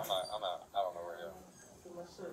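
Indistinct male speech: a man's voice talking for about the first second, then fainter talk, with no words that can be made out.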